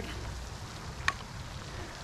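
Steady splashing hiss of a pond fountain's spray, with a low rumble of wind on the microphone, and one sharp click about a second in.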